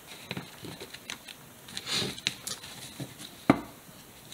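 Pokémon trading cards being handled: a series of light taps and rustles as stacks of cards are gathered and shuffled on a cloth-covered table, with one louder knock near the end.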